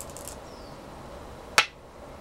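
A black Go stone snapped down onto a wooden Go board: one sharp click about one and a half seconds in. Faint clicks of stones at the very start.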